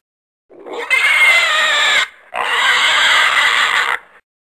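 Two long, shrill animal squeals with a short break between them, the second lasting nearly two seconds.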